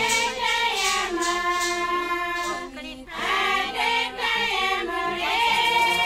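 A group of indigenous women singing a chant together in long held notes that step from pitch to pitch, with a brief break for breath about three seconds in.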